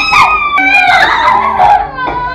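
Children's voices howling in loud, drawn-out cries that slide up and down in pitch.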